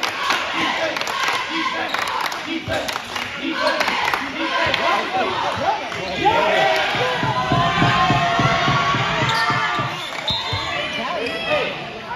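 Basketball game in a school gym: the ball bouncing on the hardwood court amid a steady din of crowd voices and shouting. The crowd noise swells about six seconds in, as a player drives to the basket.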